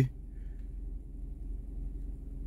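Mazda CX-7 engine idling: a steady low hum heard from inside the cabin.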